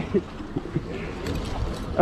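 A short laugh, then a steady background of wind and water noise on a small boat at sea.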